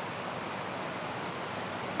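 Steady, even background hiss with no distinct events.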